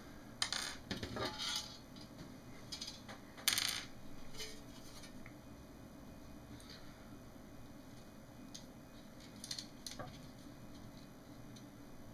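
Light metallic clinks and taps from handling the metal RF shield and cable connectors of an opened LCD monitor, with a sharper clack about three and a half seconds in and a few faint ticks near the end.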